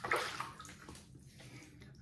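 Water splashing as a face is wetted by hand at a bathroom sink, loudest at first and then fading off.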